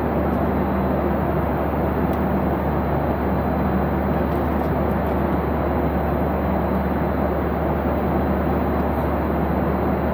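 Steady cabin noise of a jet airliner in cruise: an even rumble and rush of engines and airflow, heard from inside the cabin.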